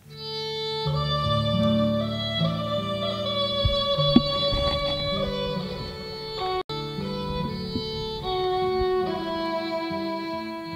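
Fiddle and guitar music with long held notes, starting suddenly at the outset. A sharp click comes about four seconds in, and the sound cuts out for an instant about two-thirds through.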